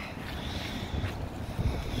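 Wind buffeting the microphone, a fluctuating low rumble over a steady outdoor hiss.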